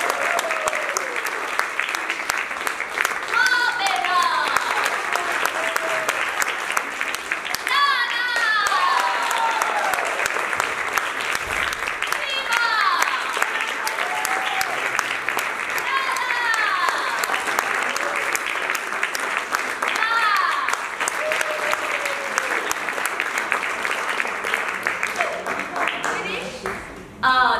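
Theatre audience applauding steadily, with voices calling out over the clapping every few seconds in falling, drawn-out cheers.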